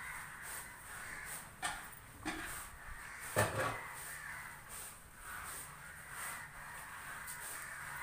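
Birds calling off and on, with a sharp knock about three and a half seconds in and a fainter click just after a second and a half.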